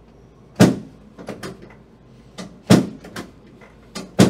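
Two loud clunks from a chiropractic table, about two seconds apart, each followed by a few lighter clicks, as the chiropractor thrusts down on the patient's lower back during an adjustment.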